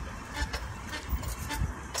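Wind rumbling on a phone microphone carried on a moving bicycle, with a few faint clicks.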